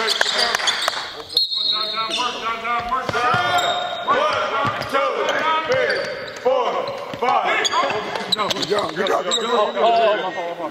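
Basketball sneakers squeaking again and again on a hardwood gym floor as players cut and change direction, with a basketball being dribbled.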